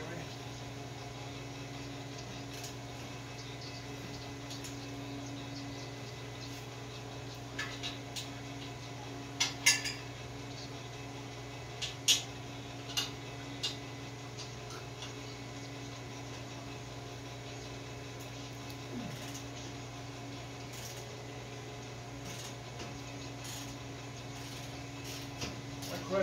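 A few sharp metal clinks of tools and steel parts on an old truck's rear suspension, bunched in the middle and loudest about ten and twelve seconds in, over a steady electrical-sounding hum.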